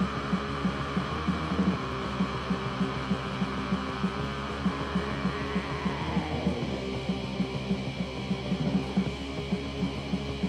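Lo-fi black metal demo recording: music with a steady low pulse of about four to five beats a second over a constant hum. A long drawn-out tone slides downward about six seconds in.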